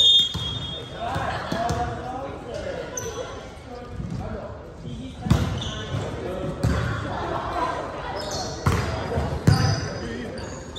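A volleyball struck by hand several times in a rally, sharp slaps that echo around a gymnasium, with a cluster of hits in the second half. Short high squeaks of sneakers on the hardwood floor come between the hits.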